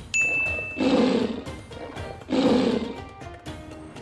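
A short bright ding, then a tiger roar sound effect twice, each about a second long, over background music.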